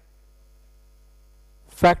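Low steady electrical hum during a pause in speech, with a man's voice resuming near the end.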